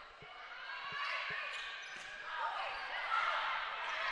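Volleyball rally in a gymnasium: a few sharp hits of the ball against hands and arms, with players and spectators calling out faintly in the hall.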